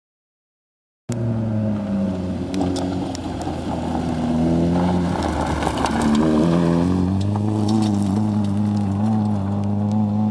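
Silence for about a second, then a Volkswagen Golf Mk1 rally car's engine under hard driving. Its pitch climbs and drops in steps as the car accelerates, lifts off and changes gear, with scattered sharp clicks over it.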